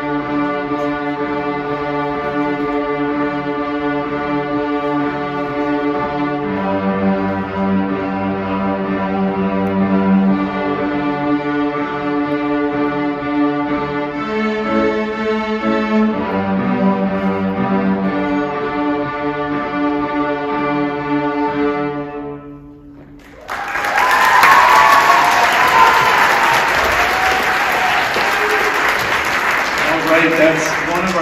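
A beginning student string orchestra of violins and cellos plays a slow blues tune on open strings with long held bowed notes, stopping about three-quarters of the way through. After a second's pause the audience applauds loudly.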